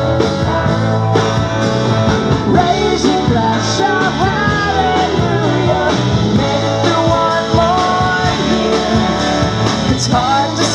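Live roots-rock band playing a song: singing over acoustic guitars, bass and drums, loud and steady throughout.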